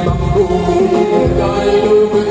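A young male vocal group singing together into microphones in a sustained, flowing melody, with a low beat about once a second.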